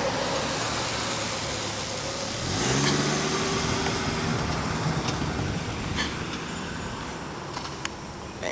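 Gust-front wind rushing over the microphone as a steady noise. About two and a half seconds in, a passing road vehicle's engine hum comes up, holds and fades a few seconds later.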